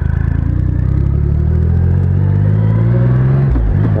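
2012 Triumph Rocket III's 2.3-litre inline-three engine accelerating, its pitch climbing steadily, then dropping sharply near the end at a gear change.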